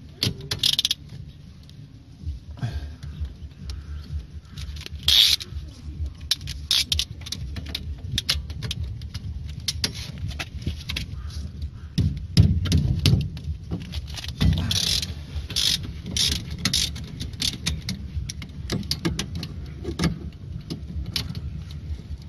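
Metal wrench clinking and clicking against a front brake caliper and its bolts as they are worked loose, scattered sharp metallic clicks over a steady low background hum.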